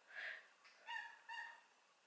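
A domestic cat meowing faintly three times in short calls while being fed; the cat is hungry.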